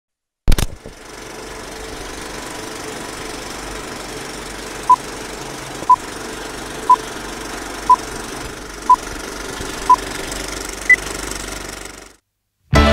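Old film projector countdown sound effect: a clunk as it starts, then a steady mechanical rattle with film crackle. Over it, six short beeps at one pitch sound once a second, then a single higher beep, and it cuts off suddenly.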